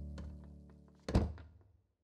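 Background music fading out, then a single heavy thunk of a wooden door shutting about a second in, dying away quickly.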